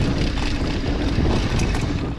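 Wind buffeting the camera microphone over tyre noise and frame rattle from a mountain bike descending a dirt singletrack, with scattered small clicks and knocks.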